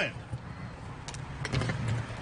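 Street traffic: a steady low engine hum and road noise from passing cars, with a few light sharp clicks a little after one second in and around a second and a half.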